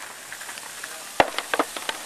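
A skateboard knocking on stone paving: one sharp knock a little over a second in, then a quick run of irregular clicks and rattles as the board clatters.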